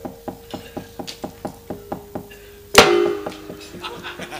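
A wayang kulit dalang's cempala and keprak knocking out a quick, even rhythm of about four knocks a second over a held musical note, then one much louder strike with a short ring near the end. This is the knocking that accompanies the puppets' movement on the screen.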